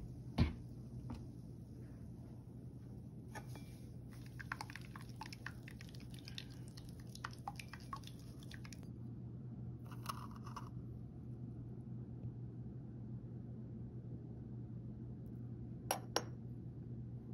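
A metal mesh strainer of wet blended pandan pulp knocking and clinking lightly against a bowl as it is shaken and tipped: one sharper knock about half a second in, then scattered small taps and ticks. A steady low hum runs underneath.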